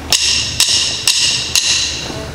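A drummer's count-in: four sharp, bright clicks, evenly spaced about half a second apart, setting the tempo just before the band starts playing.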